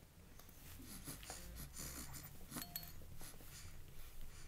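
A baby's soft breathing amid faint rustling of clothes and bedding, with a few light clicks close to the microphone.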